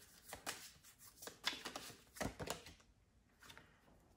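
Tarot cards being handled and shuffled: a series of brief, soft rustles and flicks of card stock.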